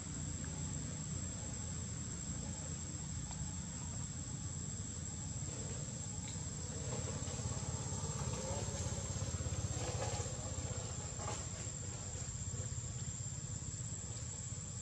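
Steady high-pitched drone of insects singing, under a low rumble that grows a little louder in the middle.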